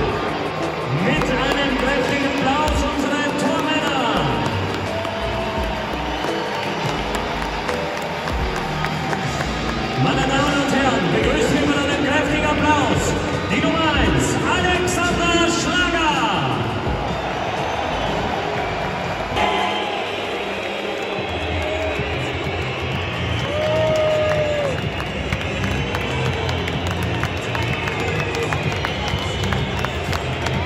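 Pre-match stadium atmosphere: music playing over the stadium PA, with spectators' voices and crowd chatter around. About twenty seconds in, a steady low beat comes in under the music.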